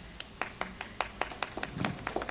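Thin, scattered applause from a few people clapping: irregular single claps, about six a second.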